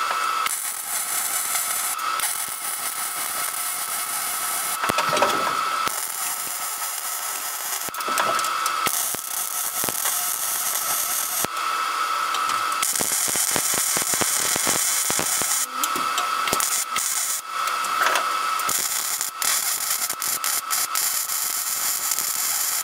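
MIG welder crackling and hissing in short runs that stop and start again several times: stitch welding a steel roll bar base plate to the floor sheet metal an inch and a half to two inches at a time.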